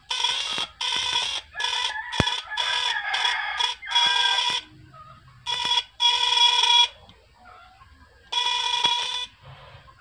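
Homemade fish shocker (stunner) buzzing in repeated bursts of half a second to a second as it is switched on and off, a steady high-pitched tone each time. The shocker is working again, putting out current. There is a single sharp click about two seconds in.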